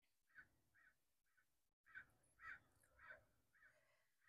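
Near silence, with faint short sounds repeating about two or three times a second.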